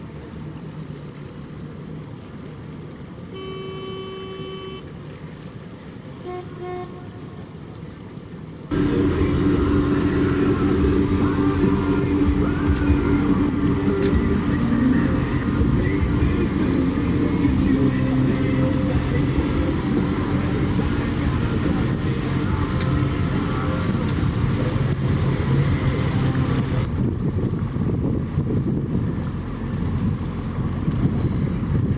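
A boat's engine running under way, with wind and water noise. About nine seconds in the sound jumps suddenly much louder and stays a steady drone. A brief horn-like toot sounds a few seconds in.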